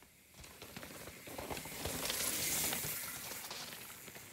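A mountain bike riding down a dirt rut and passing close by: knobby tyres crunching and sliding over loose dirt and small stones, with rattling clicks from the bike. It builds up, is loudest two to three seconds in, then fades as it goes by.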